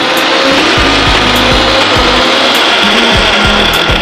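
Electric mixer grinder running at full speed with a steel jar, the motor and blades grinding black chickpeas and millet with a little water into batter. It runs steadily throughout.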